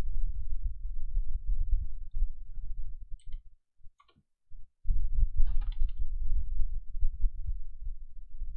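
Irregular low rumbling and thudding noise on the microphone, cutting out for about a second in the middle, with a few faint clicks.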